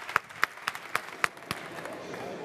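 Audience applauding, thinning to a few scattered individual claps that stop about one and a half seconds in.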